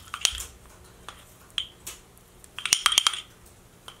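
Pastry brush dabbing oil around the inside of a ceramic mug, greasing it so the steamed cake will release: light scratchy taps and clinks against the ceramic, with a quick cluster of sharper clinks about three seconds in.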